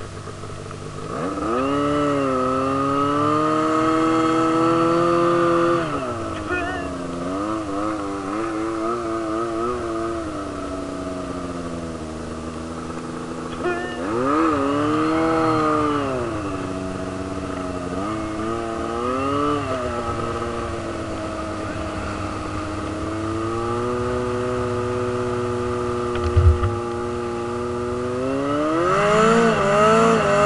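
Snowmobile engine running under a working throttle: it revs up sharply near the start, holds a steady pitch, then falls and climbs again several times as the sled rides along the trail. A short thump comes late on.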